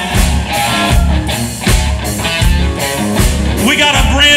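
Live country-rock band vamping instrumentally, an electric guitar playing lead over bass and a steady drum beat.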